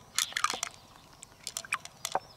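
Fingers probing and squeezing the soft flesh of an opened freshwater mussel, giving quick crackling clicks: a dense cluster near the start and a few scattered ones about a second and a half in.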